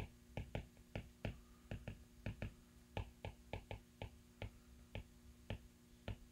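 A stylus tip tapping and clicking on a tablet's glass screen during handwriting: an irregular run of light clicks, about three or four a second.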